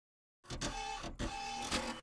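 Logo-intro sound effect: two short noisy, machine-like bursts with a faint steady tone, the second stopping abruptly.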